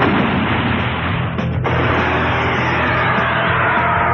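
Loud soundtrack music mixed with blast and explosion sound effects from a giant robot and monster battle, with a brief dip about one and a half seconds in.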